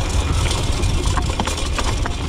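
BMX bike rattling and knocking as it rolls over a rough, rocky dirt trail, with a steady low rumble underneath and a cluster of sharp knocks in the second half.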